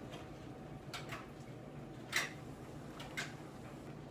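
A spatula stirring a thin liquid mixture in a stainless steel saucepan: a few soft scrapes and taps against the pan, the loudest a single knock about two seconds in, over a faint steady hum.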